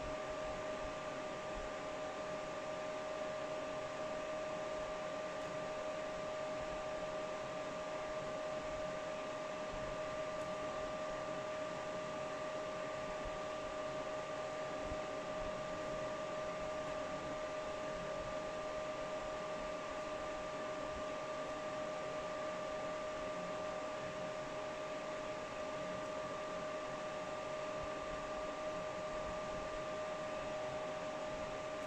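Cooling fans of a GPU mining rig running steadily: an even whir with a steady mid-pitched whine in it.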